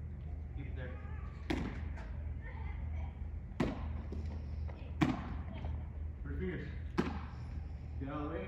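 Four sharp smacks of baseballs into a catcher's mitt, one every second or two, the loudest about five seconds in. Quiet talk and a steady low hum run underneath.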